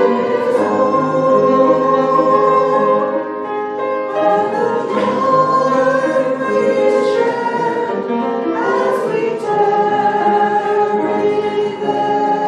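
Three women singing together in harmony, with long held notes.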